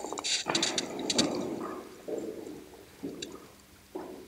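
Soft laughter and breathy chuckling with faint murmuring voices in a classroom, coming in short irregular bursts that fade toward the end.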